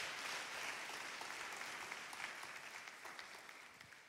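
A congregation applauding in praise. The clapping is faint and dies away toward the end.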